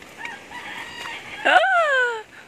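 A rooster crowing, ending in one loud long note that falls in pitch near the end.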